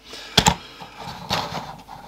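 Plastic handling noise from a brick-built LEGO train model being moved and set down: a sharp click about half a second in, then softer scuffs and light knocks.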